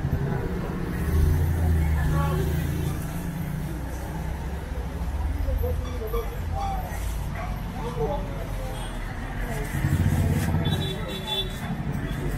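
Street-side market ambience: scattered background voices over the low rumble of passing road traffic, which swells about a second in and again near the end.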